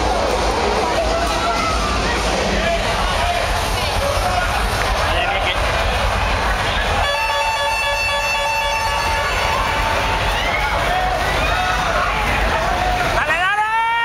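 Bumper-car ride din: a crowd of riders and onlookers shouting and talking over a constant noisy rumble. A steady pitched tone, like a horn or buzzer, sounds for about two and a half seconds midway, and a loud rising-then-falling call comes near the end.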